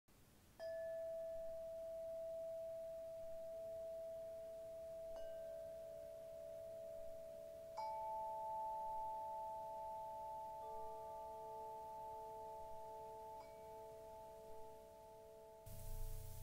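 Soft, bell-like chime tones of an intro score, struck one at a time every two to three seconds; each rings on steadily, so they build up into a held chord. The strongest, highest note comes in about eight seconds in.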